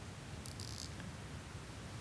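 Quiet room with a low, steady hum. About half a second in comes a brief, high, scratchy sound.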